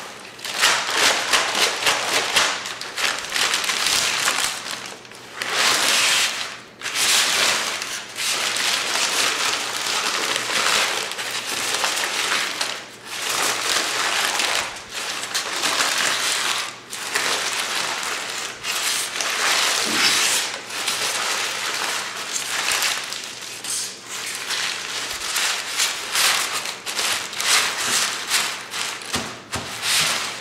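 Large sheet of brown kraft paper crumpled and twisted by hand: aggressive crinkling in continuous surges of crisp crackles, with a few brief lulls.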